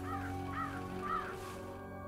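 A bird calling three times, about half a second apart, each call rising then falling in pitch, over a quiet sustained music drone.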